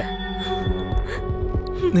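Dramatic background score: a sustained drone with low throbbing pulses underneath, and a single short spoken word near the end.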